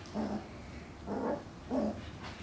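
Puppies vocalizing as they wrestle together: three short, small dog sounds.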